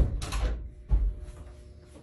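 A door being opened: a sharp knock right at the start and another thump about a second in as the door is unlatched and pushed open.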